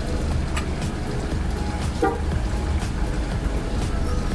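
A vehicle's engine running, heard from inside the cab as a steady low rumble, with a short horn toot about two seconds in.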